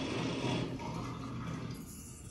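Steady whirring hiss of coffee-making equipment from a TV news segment, heard through room loudspeakers, which drops away near the end.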